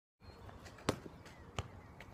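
Two thuds of a football being kicked and bouncing on a tarmac court, the first about a second in and a weaker one just over half a second later.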